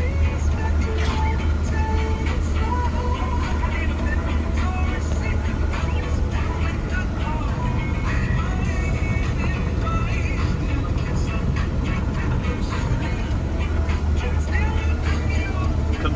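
Claas Lexion 770TT combine harvester running steadily while cutting oilseed rape, heard from inside the cab as a low drone. Music with singing plays over it.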